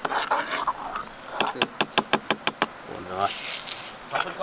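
A metal ladle knocking quickly against a metal cooking pot of porridge: about eight sharp taps in just over a second.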